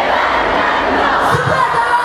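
A large concert crowd cheering and shouting, loud and continuous, with a few single voices calling out above it in the second half.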